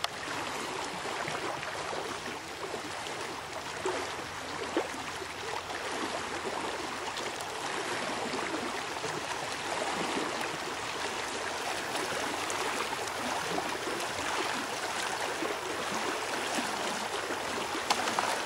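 Steady, even rushing hiss of outdoor lakeside ambience, with a couple of faint brief sounds about four to five seconds in.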